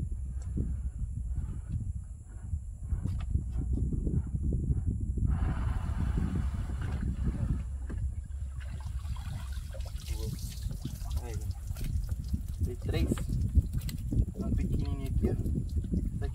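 Shallow lagoon water sloshing and trickling as a cast net is dragged slowly along the muddy bottom, over a steady low rumble, with a louder hiss of water for a few seconds starting about five seconds in.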